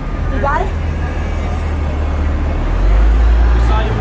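Low, steady rumble of idling vehicles and road traffic, growing louder about three seconds in, with a brief voice near the start.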